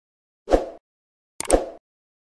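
Two short, dull pop sound effects about a second apart, each starting sharply and dying away within a quarter second, with dead silence between them.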